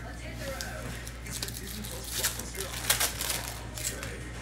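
Crinkling and rustling of plastic packaging and trading cards being handled, a run of sharp crackles that is busiest from about two seconds in to near the end.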